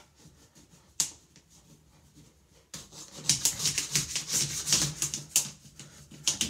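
A plastic hanger used as a scraper, scraping soap scum off glazed ceramic shower tiles in a rapid series of short strokes, starting about three seconds in. A single sharp click sounds about a second in.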